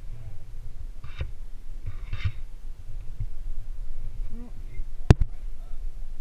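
Low steady rumble of wind and handling on a body-mounted camera during a rock climb. Two short scuffs come about one and two seconds in, and a single sharp knock about five seconds in.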